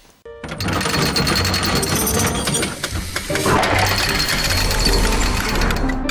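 Television channel ident: music with a regular low beat layered with rapid mechanical clattering sound effects, starting suddenly about a quarter second in after a brief silence.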